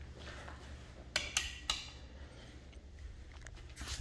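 Wall light switches clicking: three sharp clicks about a third of a second apart, then one more just before the light comes on, over a faint steady low hum.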